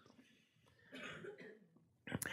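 Near silence, broken by one faint, short cough about a second in.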